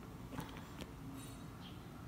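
Quiet room noise with a faint low hum, broken by two faint clicks about half a second and just under a second in.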